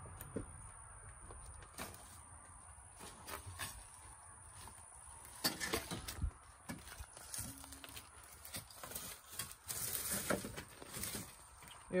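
Footsteps and handling noise of people moving through a collapsed barn's debris: scattered light knocks, clatters and crackles of loose weathered boards and dry leaves, busiest in the second half.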